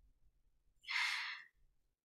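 A man's single audible breath, taken during a pause in his speech: a short, soft airy rush about a second in.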